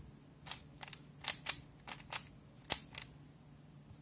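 Plastic bandaged 3x3 puzzle cube being turned by hand: about eight short, sharp clicks of its layers snapping into place, irregularly spaced, the loudest a little under three seconds in, as a corner-twisting sequence is run.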